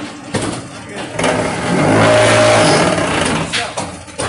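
Automatic fly ash brick making machine running through its cycle: a few clanks, then a loud, steady mechanical drone with a hum for about two seconds in the middle, ending with more knocks.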